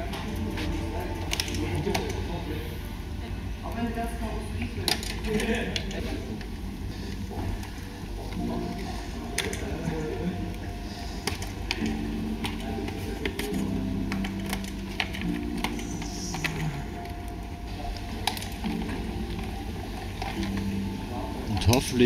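Scattered clicks and light knocks of hands working loose the parts of a water-cooled desktop PC inside its case, over a steady low hum.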